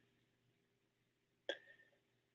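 Near silence, broken about one and a half seconds in by a single short mouth noise from the man, a click-like vocal sound before he speaks again.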